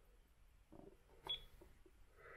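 Near silence, broken about a second in by a click and a single short, high beep from an iMAX B6 mini hobby battery charger.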